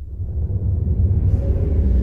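A deep rumbling swell that grows steadily louder. It is a sound effect laid under the edit's graphic title card.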